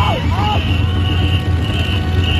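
Ngo boat race din: a shrill rhythmic sound, most likely the timing whistle that paces the rowers, repeating about twice a second over a loud steady low rumble. A few shouts come at the start.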